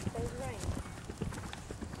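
Horse hoofbeats on grass, a string of soft, irregular thuds, with a voice briefly near the start.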